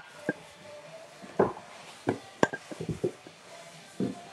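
A handful of short, irregular knocks and handling rustles over faint background music.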